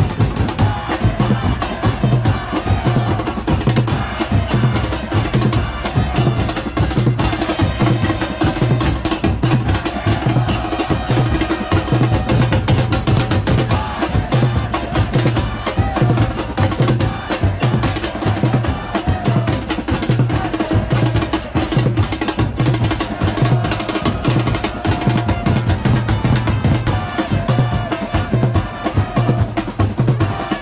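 A football supporters' band of bass drums pounding a steady, driving beat, with a crowd of voices chanting over it.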